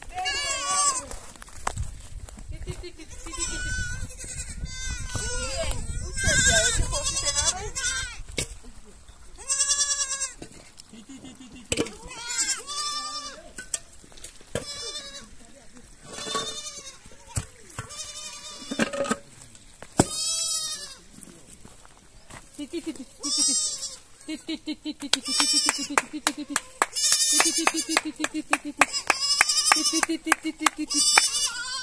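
Goat kids bleating over and over: many high, wavering calls, some overlapping, with a quick run of sharp clicks near the end.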